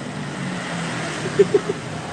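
Street traffic: a motor vehicle's engine running steadily close by, with a faint voice or two in the background.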